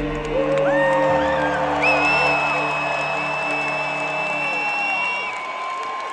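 Live music played loud through an arena sound system, with long held and gliding notes, including one high sustained note through the middle, and the crowd whooping and cheering.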